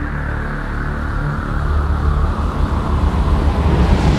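Channel-intro music: a low, droning, rumbling sound bed with sustained tones, building in loudness toward the end.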